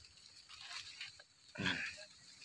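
Mostly quiet, with one short pitched animal call of about half a second, a second and a half in.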